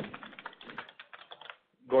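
Rapid, uneven clicking of a computer keyboard being typed on, heard over a telephone conference line. The typing stops about a second and a half in.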